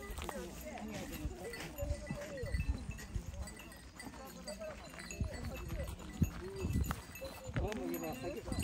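Indistinct chatter of a walking group's voices in the background, with a few low thumps.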